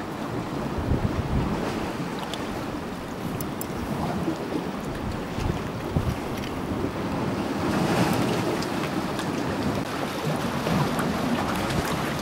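Wind buffeting the microphone over small waves lapping and splashing against breakwater rocks, a steady rushing with gusts that swell somewhat about two-thirds of the way through.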